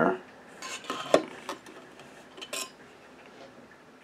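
Light metallic clinks and taps of a stainless steel ruler against a metal alcohol-burner tank as it is dipped in to gauge the fuel depth: a cluster of small knocks in the first second and a half, and a couple more around two and a half seconds in.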